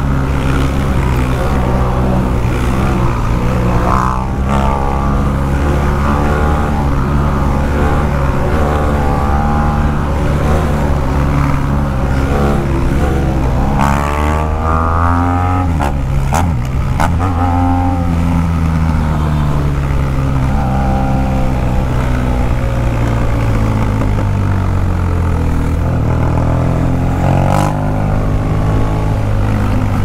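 BMW R1200 GS Adventure's boxer-twin engine pulling under way, its pitch climbing with throttle about midway, dropping sharply at a gear change, then falling away over several seconds as the bike slows.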